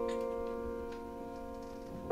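An upright piano chord, held on the pedal, rings on and slowly dies away. A few faint clicks sound over it.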